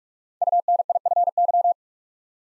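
Morse code tone sending the word "UNIFY" at 45 words per minute: a rapid run of short and long beeps on one steady pitch, starting about half a second in and lasting just over a second.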